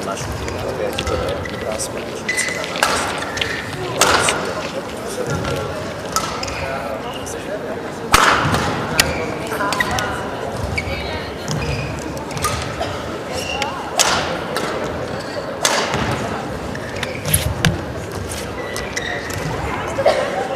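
Sports-hall ambience between badminton rallies: indistinct voices with scattered sharp knocks and thuds, about six over the stretch, in a large reverberant hall.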